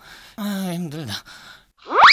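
A puppeteer voicing the donkey puppet gives a long, low sigh that falls in pitch, sounding weary and sad. Near the end, a quick whistle-like tone glides sharply upward.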